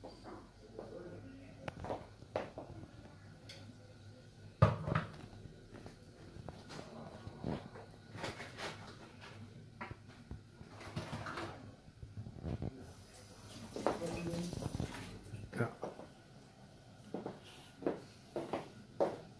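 Kitchen handling sounds: scattered knocks and clinks of a spoon, a tin and dishes on a counter, the loudest a sharp knock about four and a half seconds in, with quiet voices now and then.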